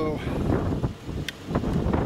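Gusting wind buffeting the microphone, a fluctuating low rumble; no shot is fired.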